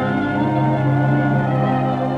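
Orchestral film score playing long held chords.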